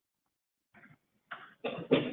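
Near silence for the first half, then short breathy bursts from a person's voice in the second half, the start of a laugh or cough.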